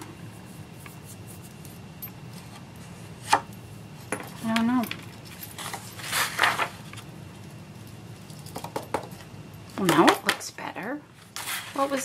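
Sheets of copy paper being handled and folded, with a single sharp tap about three seconds in and paper rustles around six and eleven seconds in. Short murmured voice sounds come a little after four seconds and again around ten seconds.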